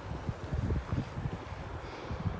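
Low, uneven rumble of wind buffeting the phone's microphone.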